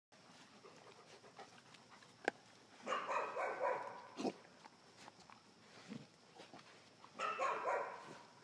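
Puppies barking and yapping in play, in two bursts of about a second each: one about three seconds in and one near the end. A single sharp click comes just before the first burst.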